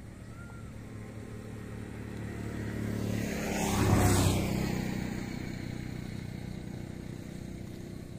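A motor vehicle passing by: its sound swells gradually to a peak about halfway through, then fades away.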